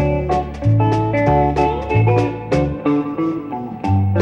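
Country band playing a song's instrumental introduction: a hollow-body electric guitar picks a lead melody over steady alternating bass notes.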